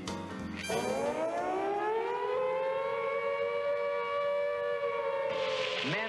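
Swing band music breaks off and an air-raid siren winds up, its wail rising in pitch and then holding steady. Near the end a rush of noise comes in with a quick falling whine.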